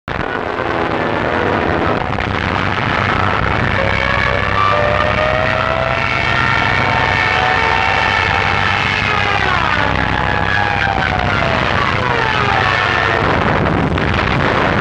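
Junkers Ju 87 Stuka dive bomber in a dive: a steady propeller-engine drone under a high whine that rises in pitch for several seconds, then falls away about ten seconds in.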